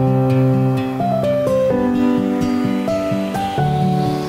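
Background music: a melody of held, pitched notes that change every half second or so.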